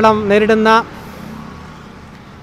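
A man speaking Malayalam into microphones for under a second, then faint, steady background noise of road traffic.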